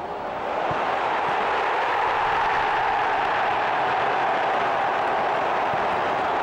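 Football stadium crowd cheering a goal, a steady, even wall of noise.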